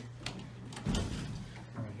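A sharp click as the elevator's floor button is pressed, then the Dover hydraulic elevator's single-speed sliding door closing about a second in, over a steady low hum.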